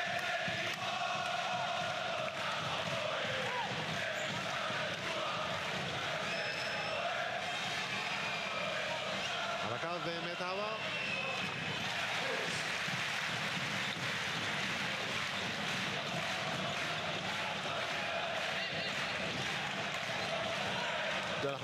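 Large arena crowd of basketball fans chanting and singing without pause, many voices in a dense, steady wall of sound.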